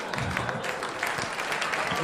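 Audience applauding, many hands clapping steadily, in response to a comedian's punchline.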